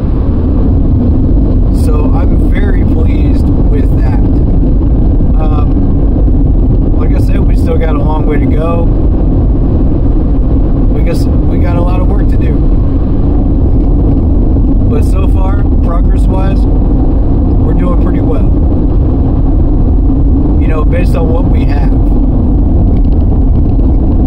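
Steady low rumble of a car's engine and tyres heard from inside the cabin while driving, with snatches of a man's voice over it.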